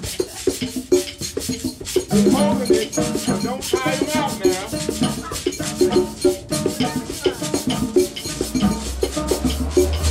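Live hand-percussion jam: congas, gourd shakers and sticks playing a dense, steady rhythm, with pitched tones weaving over it. A deep low tone comes in about eight seconds in.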